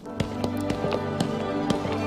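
Background music score starting up, with held low notes and a light tapping beat of about four ticks a second.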